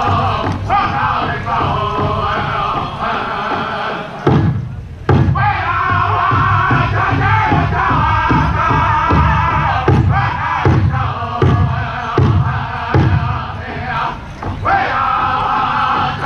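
Powwow drum group singing in unison while beating a large shared drum in steady strokes. About four seconds in the singing breaks off briefly around a couple of heavy drum strokes, then resumes over the beat.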